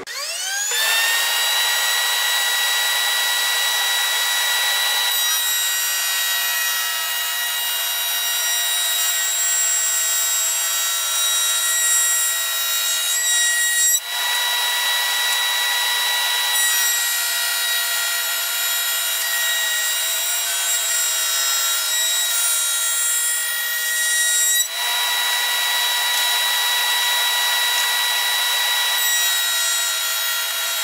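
A table-mounted router starts up with a rising whine and settles at full speed. It then runs steadily while a rail-and-stile bit cuts the stile profile along a poplar board fed against the fence. The sound changes as the cut begins about five seconds in, and dips briefly twice before running on.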